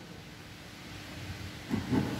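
Quiet room tone with a faint steady hum and a brief soft sound near the end.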